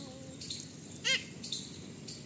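Birds chirping repeatedly in the background, with one short, louder call about a second in.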